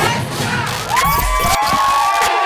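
Concert crowd cheering and screaming, with several high, held screams rising out of it from about a second in, over a low rumble.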